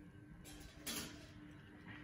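Faint room tone: a steady low hum, with a short rustle about a second in.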